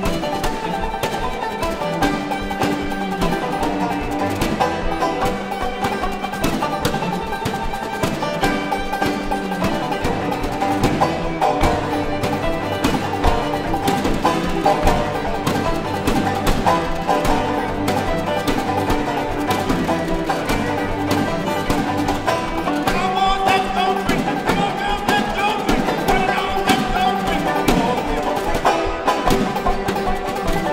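Old-time string band playing an instrumental tune: a fiddle bowing the melody over steadily picked open-back banjo.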